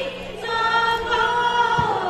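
A group of voices singing a Borgeet in Raag Mallar together, holding long notes over a harmonium, the melody stepping down near the end. A single low drum stroke sounds near the end.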